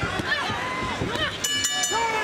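Shouting voices from the crowd and corners over the fight, then, about a second and a half in, a ring bell struck several times in quick succession, signalling the end of the round.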